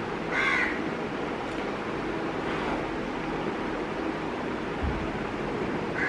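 A crow cawing: one short harsh call about half a second in and another right at the end, over a steady background hiss. A soft low thump near the end.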